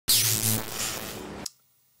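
Short logo sting for a channel ident: a loud burst of hiss with high whistling pitch sweeps and a steady low hum underneath, cutting off suddenly about one and a half seconds in.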